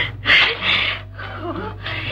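A woman's breathy gasp of delight, followed by fainter voice sounds, over the steady low hum of an old film soundtrack.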